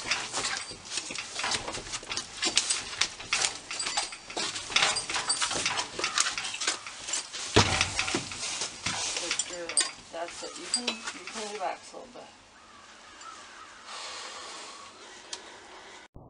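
Percheron draft mare's hooves knocking and clattering on a horse trailer's floor and ramp as she steps in and out. There is a dense run of sharp knocks for about ten seconds, then it goes quieter.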